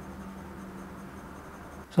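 Glass dip pen nib moving on paper, a faint steady scratching of drawing strokes, over a steady low hum.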